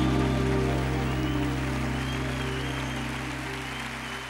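A live rock band's final held chord, ringing on without a beat and fading steadily away at the end of the song.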